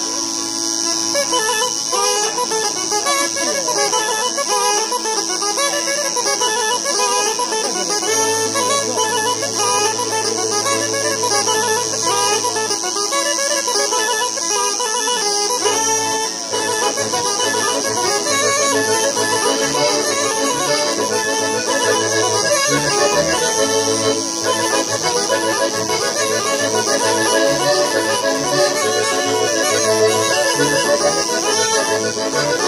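Small diatonic button accordion (organetto) and a wind instrument playing a campidanese, a traditional Sardinian dance tune, as one continuous melody. The accordion's low bass is held at first, then pulses in a steady dance rhythm from about halfway.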